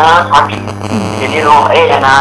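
Speech over a steady low electrical mains hum.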